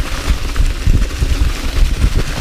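Mountain bike descending a leaf-strewn dirt trail at speed: tyres hissing over dry leaves and dirt with short rattles and clicks from the bike over bumps, and wind buffeting the camera microphone in low, gusty rumbles.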